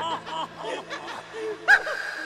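Cartoonish laughing sound effect, a rapid string of chuckling syllables about six a second that slows and thins out, then a sharp crash near the end as the title letters smash down.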